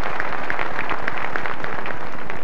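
A large audience applauding: dense, steady clapping filling a theatre hall.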